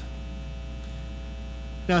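Steady electrical mains hum with a faint buzz of evenly spaced overtones. A man's voice comes in right at the end.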